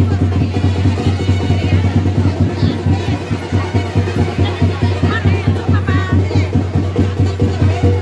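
Music with fast, steady drumming, about three beats a second, carrying a strong low drum tone.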